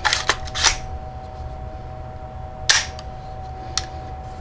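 AR-15 trigger group being worked by hand: sharp metallic clicks of the trigger and safety selector. There are three quick clicks in the first second and a louder one near three seconds in. The trigger has just had its creep taken out with an adjustable set-screw grip screw.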